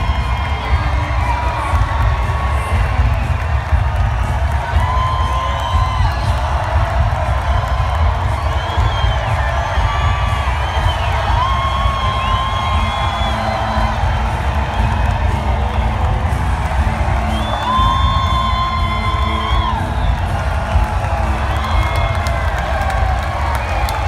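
Large arena crowd cheering and shouting steadily, with long whoops and whistles rising and falling above the roar.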